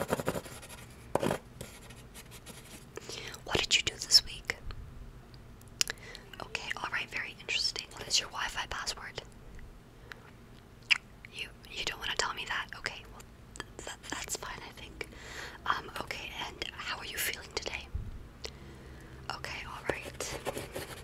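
Close-up whispering into a microphone, in several short phrases with pauses between them.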